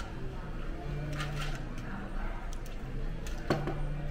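Dining-room ambience: faint background voices over a low steady hum, with a few sharp clicks, the loudest about three and a half seconds in.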